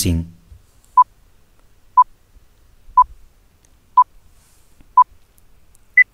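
Countdown timer sound effect: five short, even beeps one second apart, then a single higher beep near the end, signalling that the time to answer is up.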